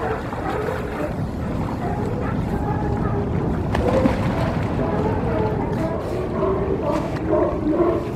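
A group of sea lions calling in the water, many overlapping barks and groans, over a steady low rumble.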